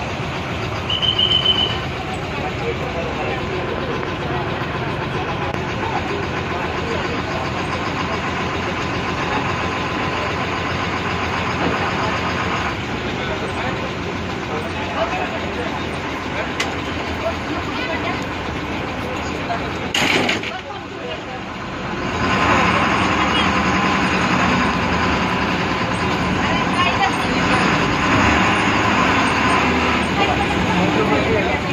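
Cabin sound of an Ashok Leyland MSRTC bus: the diesel engine running, with voices in the background. A brief high beep comes about a second in. From about 22 s the engine is louder as the bus pulls away.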